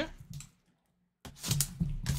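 Gloved hand handling a shrink-wrapped trading card box, giving a few light clicks and plastic rustles. The sound cuts out completely for a moment near the middle.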